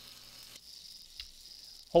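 Faint, steady hiss and crackle of a 7018 stick electrode's welding arc, which thins out about half a second in.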